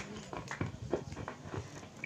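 Applause dying away into a few faint, scattered hand claps.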